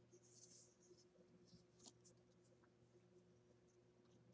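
Near silence over a low steady hum, with faint rustling and a few light ticks as a tarot card is picked up from a laptop.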